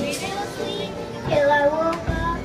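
A young girl singing karaoke over a music backing track. Her voice is loudest on a held, wavering note near the end.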